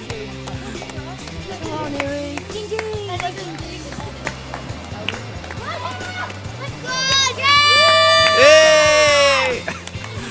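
Background music with a steady bassline under street noise, then about seven seconds in a spectator gives a loud, high-pitched cheering call, held for about two and a half seconds before it falls away.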